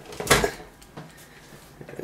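A heavy LCD TV set down face down with one dull thud about a third of a second in, then a lighter knock about a second in.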